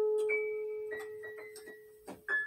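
Portable digital keyboard played with a piano voice: one note struck at the start rings on and fades slowly, with a few higher notes added over it. Light ticking clicks run through it.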